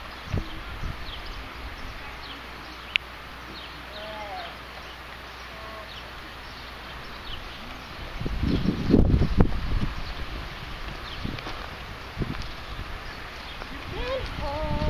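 Quiet outdoor background with scattered faint bird chirps and a single sharp click about three seconds in. About eight seconds in comes a loud low rumble lasting roughly two seconds.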